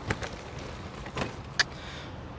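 A hard-shell suitcase being pushed into a car's boot: a few light knocks of the case against the boot, with a sharper click about one and a half seconds in.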